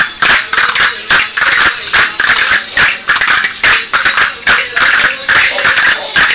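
Music for a Murcian jota playing at a lively dance rhythm, with sharp clicks several times a second over it, typical of the dancers' castanets, and feet shuffling on the floor.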